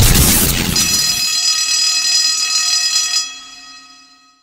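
Closing of a logo-reveal intro jingle: a loud hit with a short noisy whoosh, then a bright, held ringing chord that fades out near the end.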